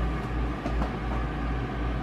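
Steady low hum with an even rushing noise of a running appliance fan; it stops abruptly near the end.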